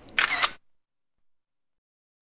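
A single camera shutter sound, short and snappy, near the start: a photo being taken.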